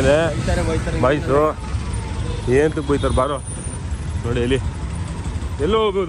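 Short spells of people talking over a steady low rumble of road traffic and vehicle engines.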